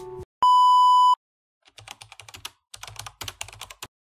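A loud electronic beep, one steady tone held for under a second, followed by quick clicks of typing on a computer keyboard in two short runs.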